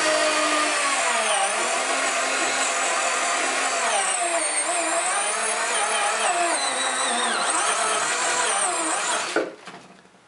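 Handheld power drill with a multi-step bit cutting a hole through a hard plastic tray, running continuously with the motor pitch wavering as the bit loads and frees up. It stops shortly before the end.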